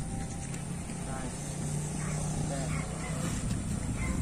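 A passing motorcycle: a steady low engine hum that swells for a second or two in the middle and then fades.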